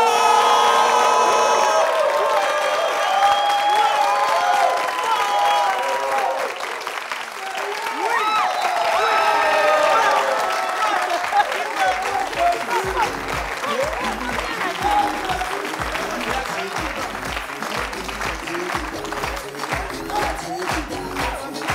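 Studio audience clapping and cheering to welcome a guest, with music playing. About twelve seconds in, a steady bass beat starts under the applause.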